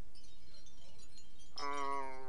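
Faint high tinkling, like small chimes, in the first second. From about a second and a half in, a voice holds one steady note.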